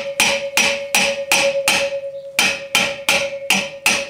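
Hammer tapping a vented brake disc onto a rear hub, about three quick blows a second with a short pause about two seconds in, the disc ringing with one steady note between blows. The disc is a tight machine fit on the hub and is being tapped home.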